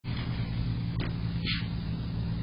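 A steady low mechanical hum, with a faint tick about a second in and a brief soft hiss about a second and a half in.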